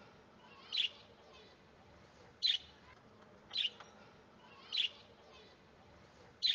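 A bird chirping in short single chirps, four times, about a second or so apart.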